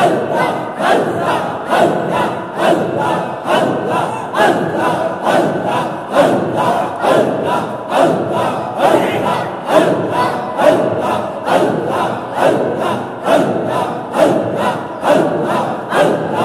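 A large crowd of men chanting Sufi zikr in unison, repeating a sung phrase in a steady pulsing rhythm.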